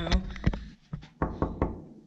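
Knuckles knocking on a hotel room door: a few quick knocks, most of them in a cluster just past the middle.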